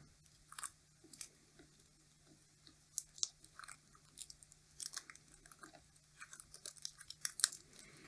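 Faint, scattered crackles and clicks of yellow insulating tape being peeled by hand off the windings of a switch-mode power-supply transformer.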